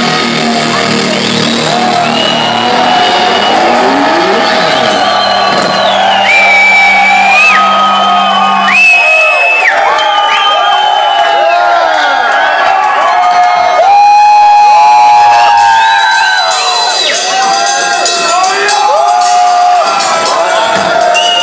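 Club concert crowd cheering, shouting and whistling after a metal song ends, over a low held note from the stage that cuts off about nine seconds in.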